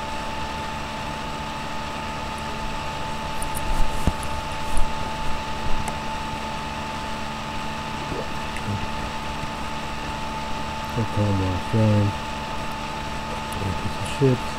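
Steady background hum and hiss with several fixed tones, broken by a few soft clicks about four to five seconds in and a brief murmur of voice near the end.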